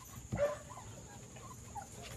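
American Bully puppies giving a few faint, short, squeaky whimpers, the first and loudest about half a second in.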